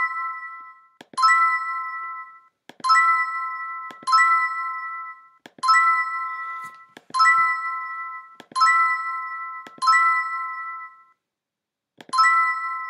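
Online scratchcard game's reveal sound, played each time a number is clicked open: a click and a bright chime of three ringing tones that fades over about a second. It sounds seven times, a little over a second apart.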